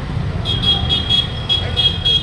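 A series of about seven short, high-pitched toots in quick, uneven succession, starting about half a second in, over a steady low rumble of street traffic.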